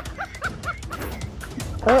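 A quick run of about five short, high yelps in the first second, fading away, over background music with a light ticking beat.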